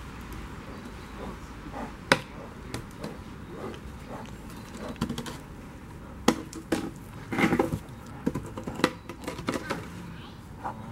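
Brown bear gnawing on a chunk of wood: sharp cracks and crunches, one about two seconds in and a run of them in the second half.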